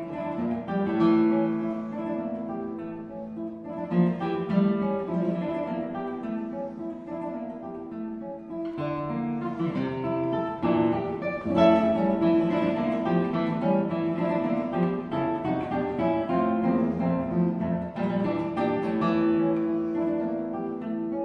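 Solo nylon-string classical guitar played fingerstyle: a continuous flow of plucked notes and chords, growing denser and fuller from about nine seconds in.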